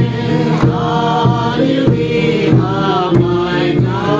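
A group of men and women singing together, a man's voice leading through a microphone, with a laced barrel drum struck by a stick three times, about one beat every second and a quarter.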